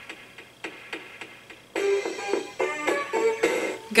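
Tiger 2-XL robot toy playing a cassette tape through its built-in speaker: music, faint with light clicks about twice a second at first, then louder with a melody from about two seconds in.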